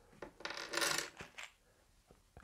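Small plastic building bricks dropped onto a hard tabletop, clattering and rattling for about a second, followed by a couple of single clicks.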